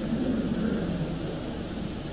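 A pause in a man's speech on an old recording: steady tape hiss and low rumble, with faint low murmuring in the first second.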